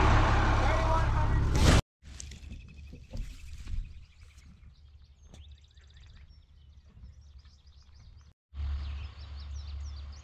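Outdoor sound in three abrupt cuts: about two seconds of loud rushing wind noise on the microphone, then a quieter stretch of birds chirping with a short trill, then a low wind rumble on the microphone with birds chirping faintly above it.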